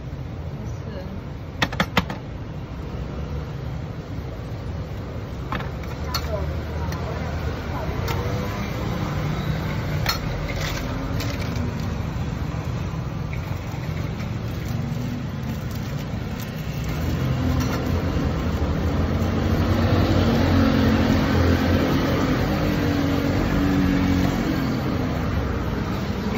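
Street background noise: a steady low traffic rumble, with a vehicle engine running louder from about seventeen seconds in, and a few sharp clicks near the start.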